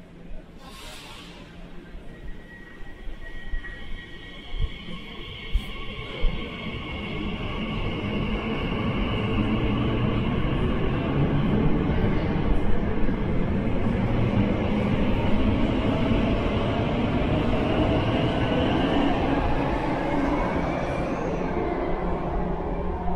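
Elizabeth line Class 345 train running in the tunnel at the station. Its rumble builds over the first several seconds and then holds steady, with a long high electric whine over it.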